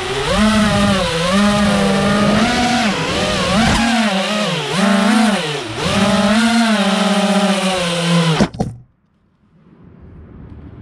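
FPV racing quadcopter's electric motors and propellers whining, the pitch rising and falling as the throttle changes, heard from the onboard camera. The whine cuts off suddenly about eight and a half seconds in as the quad lands and its motors stop.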